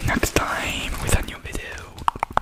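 A man whispering close to the microphone, with a few sharp mouth clicks.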